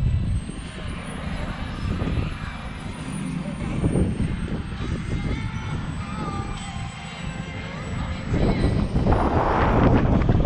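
A model jet turbine running in the distance over a steady rumble of wind on the microphone, the sound swelling louder about eight and a half seconds in.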